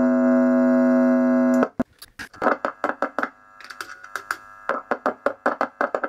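Electric guitar amplifier output during a pickup test: a steady buzzing tone that cuts off suddenly about a second and a half in, then a run of short, sharp taps and clicks picked up through the amp, the sign that the newly fitted Jazzmaster neck pickup is working.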